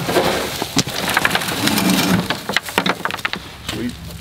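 A dwarf Alberta spruce with its root ball being heaved into a wheelbarrow: branches rustling and loose soil pattering and spilling onto the tray and driveway, with scattered sharp knocks.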